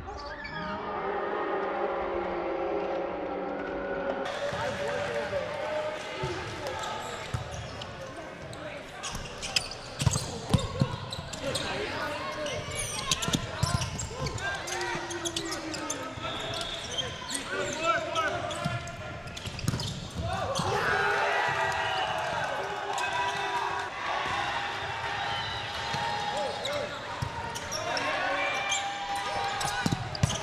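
Indoor volleyball play: players shouting and calling to each other throughout, with sharp slaps of the ball being hit and bouncing, the loudest of them around nine to twelve seconds in, all echoing in a large gymnasium.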